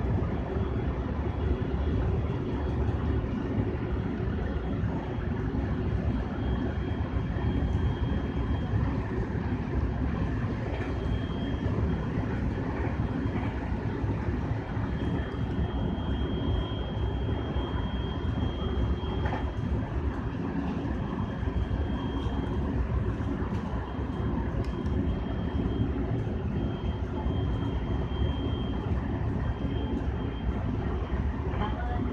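Running noise of an electric train heard from inside, at the front of the train: a steady low rumble with a faint high tone that comes and goes.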